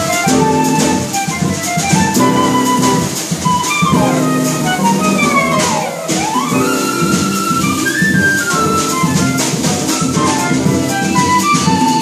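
Live jazz band playing: flute leading the melody over piano, upright double bass and a drum kit with steady cymbal strokes. About four to six seconds in, the lead line swoops down and back up.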